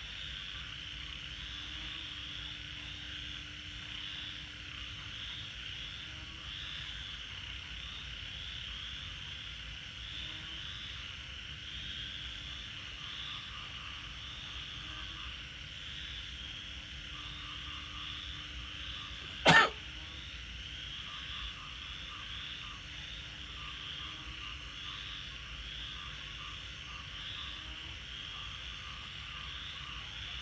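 A steady, high-pitched night chorus of calling animals, finely pulsing, with one sharp, loud click about two-thirds of the way through.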